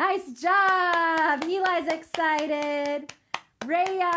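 A woman clapping her hands quickly, about five claps a second, while she talks over the claps in long, drawn-out words; her voice stops briefly near the end while a single clap sounds.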